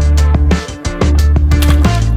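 Background music with a deep bass line and a drum beat.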